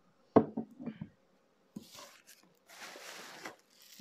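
A glass bottle set down on a wooden table with a sharp knock, followed by a few lighter taps. After a short pause comes a soft plastic rustle as a bag-wrapped item is lifted out of a cardboard box.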